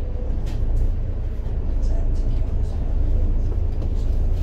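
Volvo B7TL double-decker bus's six-cylinder diesel engine running with a steady low rumble, heard from inside the bus, with a few light clicks and rattles.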